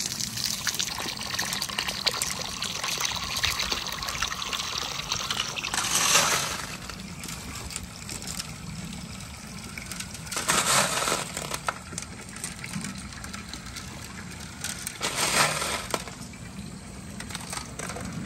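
Water pouring and splashing out of a clear plastic tube onto pavement, with glass marbles clicking as they roll and knock together inside the water-filled tube. The flow surges louder three times, about six, eleven and fifteen seconds in.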